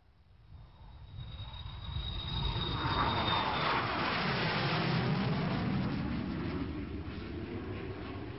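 Jet aircraft passing overhead: a rumbling roar swells up, a thin high whine drops in pitch as it goes by, and the noise then slowly fades away.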